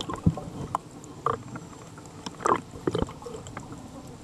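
Underwater water noise picked up through a waterproof camera housing, with scattered sharp clicks and two short, louder bursts, one about a second in and one in the middle.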